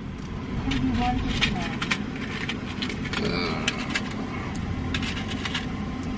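Car engine idling, heard from inside the cabin, with scattered light clicks and jingles of small items being handled. A faint voice comes in briefly about three seconds in.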